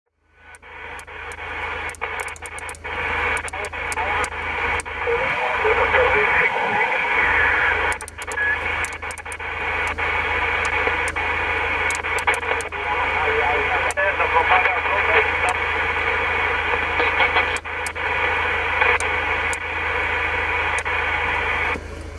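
CB transceiver receiving on upper sideband in the 27 MHz band: a steady, narrow-band hiss of static with frequent sharp crackles. Faint, garbled sideband voices come and go in the noise, and a low steady hum lies underneath.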